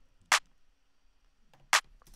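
Snare-clap drum sample playing back in a looping one-bar pattern, sounding twice as single short, sharp hits about a second and a half apart, one hit per bar.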